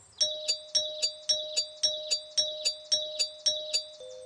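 Cartoon doorbell chime, one ringing note struck over and over in a rapid, even stutter of about four strikes a second.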